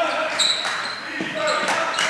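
Basketball dribbled on a hardwood gym floor, a few bounces echoing in the hall, with a brief high sneaker squeak about half a second in and voices in the gym.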